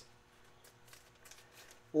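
Faint, scattered light ticks and rustles of trading cards being handled, over a faint steady hum.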